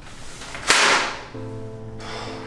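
A single sharp whoosh about two-thirds of a second in, fading out over half a second. Music with sustained notes comes in just after the middle.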